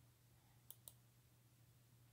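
Near silence with a faint low hum, broken just under a second in by two quick faint clicks close together: a computer mouse clicking to move to the next photo.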